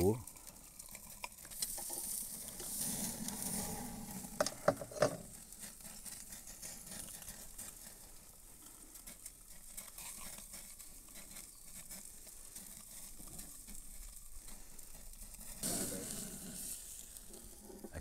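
Ribeye steak sizzling on a hot cast-iron kamado grate as flaming bacon fat drips onto it from a flambadou, louder at times, with a few sharp pops about five seconds in.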